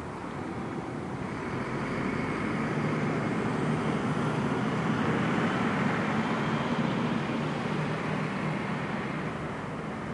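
A road vehicle passing by: traffic noise that swells over a few seconds, is loudest about midway, then fades away.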